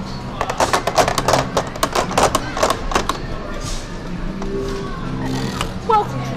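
A quick, irregular run of sharp clicks and crackles from a hands-on electronics exhibit with plug-in circuit modules, lasting about two and a half seconds, then low steady tones.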